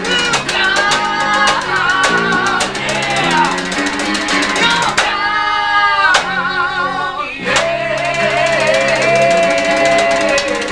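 Rock band playing live: guitars, bass and drums over a steady beat, with a long, wavering high melody note about five seconds in.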